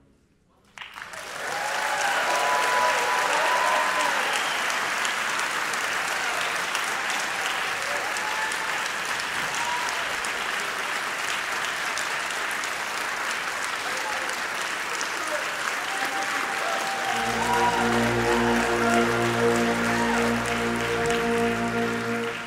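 Audience applause with a few shouts and whoops, starting about a second in after a brief silence. About seventeen seconds in, music with sustained low notes starts under the clapping.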